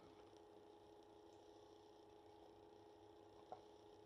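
Near silence: room tone with a faint steady hum and one soft tick near the end.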